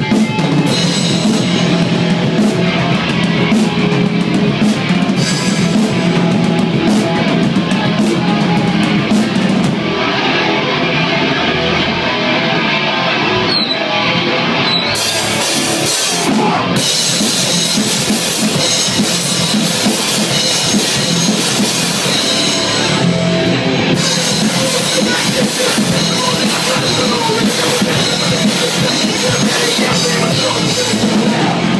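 Hardcore punk band playing live and loud, with a drum kit and distorted electric guitars.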